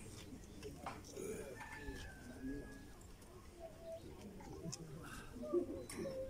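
Faint bird calls, a few short, steady notes, over the low murmur of a quietly gathered crowd.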